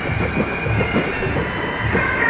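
Parade band music: a drum beat about twice a second under steady, held high notes.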